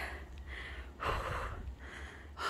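A woman breathing hard from the effort of climbing a steep mountain trail, with one long, loud breath about a second in. A faint low rumble runs underneath.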